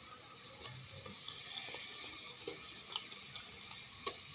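Onion and tomato masala sizzling steadily in a hot electric rice cooker pot, with a few faint clicks near the end.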